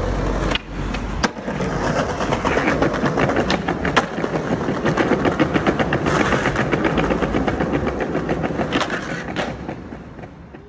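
Skateboard wheels rolling fast over stone paving, clattering rapidly over the joints between the slabs, with a few sharper cracks of the board hitting the ground, one a little over a second in and a couple near the end.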